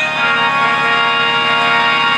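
Harmonium holding a steady sustained chord with no singing over it.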